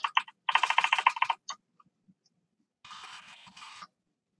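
A quick run of about ten computer-keyboard keystrokes in about a second, a paste shortcut pressed over and over, followed near the end by a soft, even hiss.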